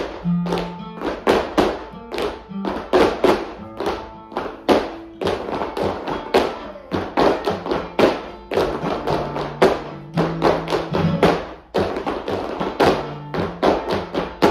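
Flamenco dancers' shoes striking a wooden floor in a quick run of sharp taps and heel stamps, in time with flamenco soleá music.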